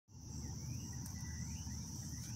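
Steady, high-pitched night chorus of insects such as crickets, with a few faint rising chirps above a low rumble.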